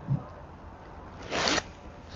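Low room tone with a faint knock at the start, then a short rustle about one and a half seconds in, close to the microphone, as the seated man shifts toward the chair beside him.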